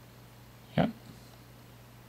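Only speech: a man says a short "yeah" just under a second in, over a steady low hum.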